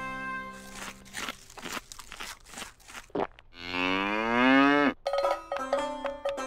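Cow chewing a mouthful of hay with a run of short crunches, then one long moo from about three and a half seconds in, rising in pitch before it cuts off. Music comes in near the end.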